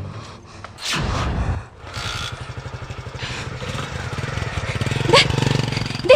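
A low, rapid, engine-like puttering that grows louder over a few seconds, with a brief sharp rising whistle-like glide near the end.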